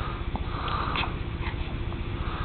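A young baby breathing noisily through the nose in short, sniffly breaths, with a few faint clicks, over a steady low rumble.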